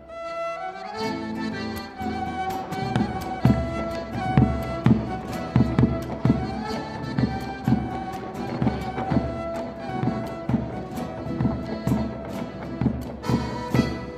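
Live Argentine malambo music: fiddle and accordion melody over guitar, driven by sharp strikes of a bombo legüero drum and the dancers' stamping boots (zapateo), several times a second.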